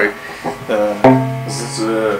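G&L Custom Shop electric guitar played through a tube amplifier's own distortion, with no pedal. Two chords are struck, about half a second and a second in, and the second rings on.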